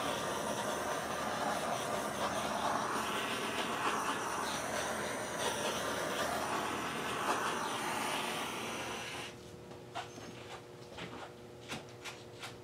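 Handheld torch flame hissing steadily as it is passed over wet acrylic paint to pop bubbles, then cutting off about nine seconds in; a few faint clicks follow.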